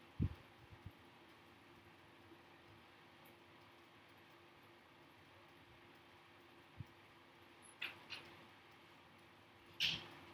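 Quiet room with a faint steady hum. There is a soft low thump just after the start and a small knock later, then brief fabric rustles around eight seconds and louder near the end as the stethoscope is shifted over the abdomen.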